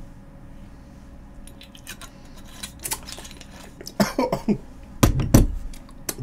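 Clinks and small knocks of a glass cup and liquor bottle being handled. About four seconds in comes a man's throaty gasping, then a heavy cough-like burst, the loudest sound, as the strong shot goes down.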